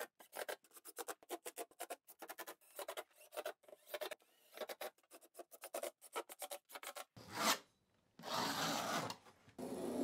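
Rapid, uneven scratching and rasping strokes against foam backer board for about seven seconds. Then comes one loud scrape, and a utility knife is drawn across a Hydro-Blok foam panel near the end.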